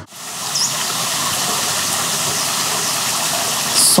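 Steady rush of flowing water, a waterfall or stream, with a brief high chirp about half a second in.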